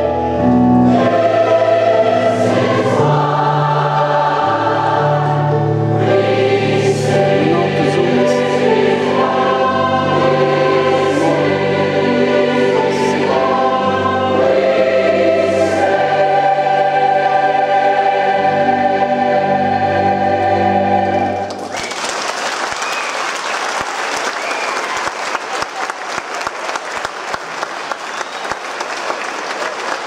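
Large massed choir singing the closing bars of a song. About twenty-one seconds in the singing stops and the audience breaks into applause.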